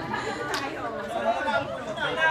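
Crowd chatter: several people talking at once, with a brief sharp click about half a second in.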